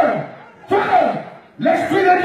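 Voices crying out loudly in repeated bursts, about one a second, each cry starting high and falling in pitch, over a crowd.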